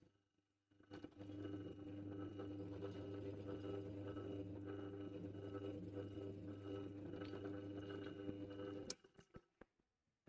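Pillar drill (drill press) motor starting about a second in and running steadily while countersinking, then stopping suddenly near nine seconds, followed by a few light knocks.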